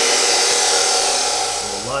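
DeWalt abrasive chop saw cutting through a steel chassis tube: a loud, steady grinding that eases off near the end as the cut finishes.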